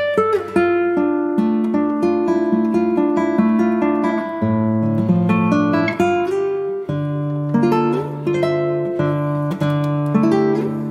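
Background music played on acoustic guitar: a steady run of plucked, ringing notes over sustained low bass notes.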